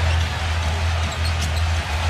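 Basketball arena crowd noise over a steady low drone, with a basketball being dribbled on the hardwood court.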